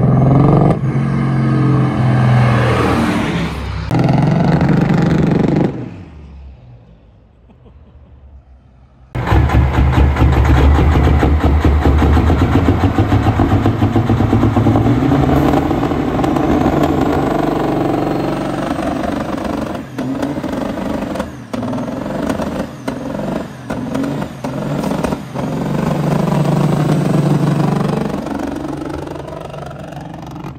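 Heavily modified 1500-wheel-horsepower diesel semi truck running hard, its engine fading into the distance about six seconds in. After a sudden cut it is loud and close again, the engine note rising and dipping, then fading away near the end.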